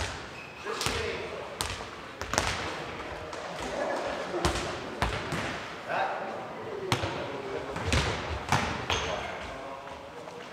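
A football tennis (nohejbal) rally in a large sports hall. The ball is struck by players' feet and bounces off the wooden floor, making about a dozen sharp knocks at irregular intervals, each one echoing through the hall. Players give brief shouts along with them.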